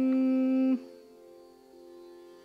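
Carnatic classical music: a long, steady held note over a tanpura drone, ending sharply about three-quarters of a second in. After it the quieter drone continues with a soft melodic line.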